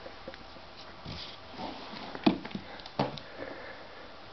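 Bengal kitten playing fetch up close: scuffling with a few soft knocks, then two sharper knocks in the second half.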